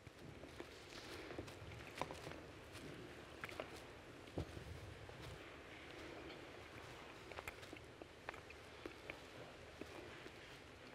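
Faint rustling and shuffling with scattered light clicks and knocks as communion cups, plates and cloths are handled and cleared from the altar, with a sharper knock about two seconds in.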